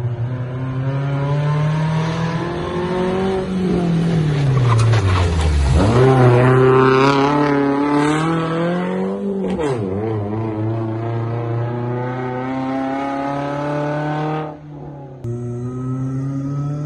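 Rally car's engine revving hard as it approaches and passes at speed, its pitch sweeping down sharply about five seconds in as it goes by, then pulling away up through the gears in a steady drone. The sound drops out briefly near the end.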